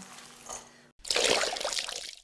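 Faint rustle of mixed nuts being folded with a silicone spatula in a glass bowl. After a sudden cut about a second in, a loud rushing whoosh of noise lasts about a second and fades out: a transition sound effect leading into a title card.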